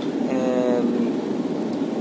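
Steady rushing background noise, with a short held 'um' from a man's voice near the start.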